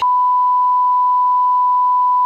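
A loud, steady electronic test tone: one pure beep held at a single unchanging pitch, like a broadcast reference tone.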